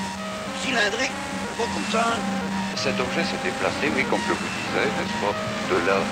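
Experimental recorded track: warbling, pitch-gliding voice-like sounds over a steady low drone and held tones, with no words that can be made out.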